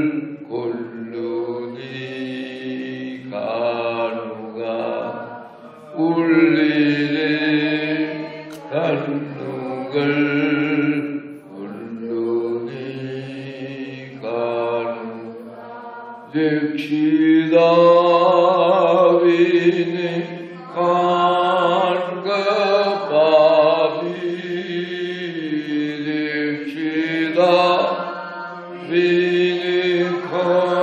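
Slow devotional hymn chanted by men's voices, in long held phrases with short breaks between them.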